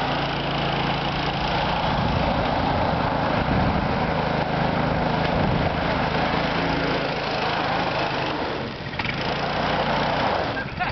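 Go-kart's small engine running steadily, its level dipping briefly near the end.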